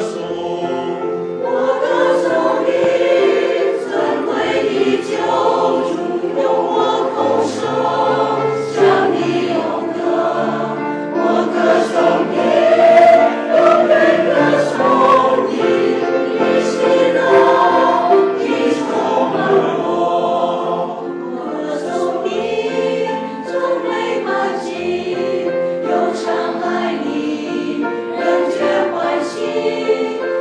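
Mixed church choir of women's and men's voices singing a hymn in Chinese, sustained and continuous.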